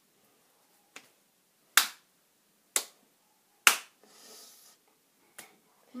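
Sharp slaps of a hand on a bare wrist and forearm, struck one at a time about a second apart: three clear smacks in the middle, with fainter taps about a second in and near the end. These are the penalty slaps of a rock-paper-scissors game, given to the loser.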